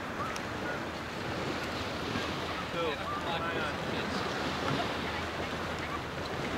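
Steady wash of surf and wind buffeting the microphone, with faint voices now and then in the background.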